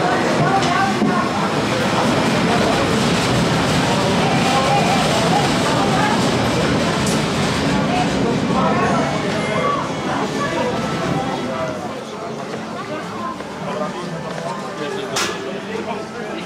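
A mine-train roller coaster rolling along its track with people's voices over it. It is loud for about ten seconds, then fades, and there is a single sharp click near the end.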